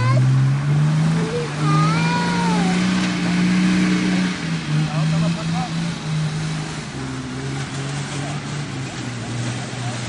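A 4x4 off-road vehicle's engine revving hard under load as it drives up a muddy track: the pitch climbs at the start, holds for about four seconds, then drops back and wavers lower.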